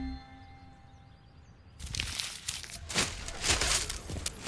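The last plucked notes of the score die away. From a little under two seconds in comes a run of irregular rustling, crunching noises with no steady tone, of the kind made by movement in a heap of wrapping paper and broken wood.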